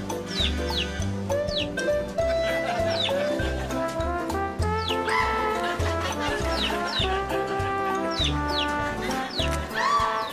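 Jaunty background music with a pulsing bass line, with many short, high falling sounds scattered over it.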